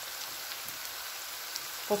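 Sliced onion and carrot frying in oil in a pan, a steady, even sizzling hiss.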